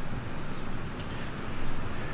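Steady outdoor background noise with no distinct event, swelling slightly near the end.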